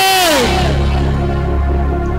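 A man singing into a microphone holds a note of a devotional song, which slides down and stops about half a second in; then steady held accompaniment chords with a deep bass carry on.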